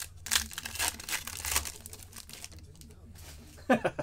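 Foil wrapper of an Upper Deck hockey card pack being torn open and crinkled by hand, a run of crackling tears over the first two seconds or so, then quieter handling of the cards. A man's brief laugh near the end.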